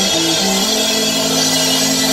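Live rock band playing electric guitar, bass guitar, drums and keyboard together. A few quick changing notes give way about a third of the way in to one long held note over a wash of cymbals.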